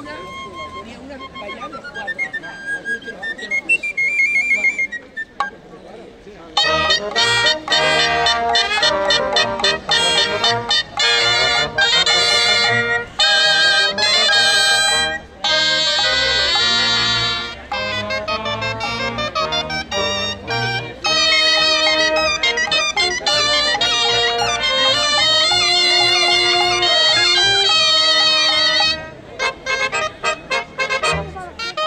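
A sardana played by a cobla: a solo flabiol melody opens, then about six seconds in the full band of double-reed tenoras and tibles, trumpets, trombone, fiscorns and double bass comes in with the dance tune, pausing briefly near the end.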